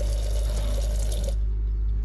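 Tap water running into an Armitage Shanks undercounter ceramic basin and down the plug hole, the flow cutting off a little over a second in. A steady low hum continues underneath.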